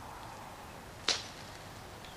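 A single short, sharp click about a second in, over a faint steady background hiss.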